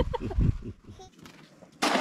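A small child laughing, then near the end a sudden loud splash as a crab pot is dropped into the water, fading away after it.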